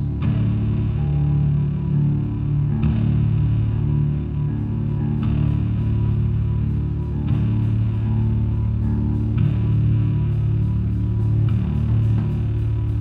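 A rock band playing live: electric guitars and bass guitar hold slow, heavy, sustained riffs over drums. A cymbal crash comes about every two seconds, and a steady cymbal ticking joins about halfway through.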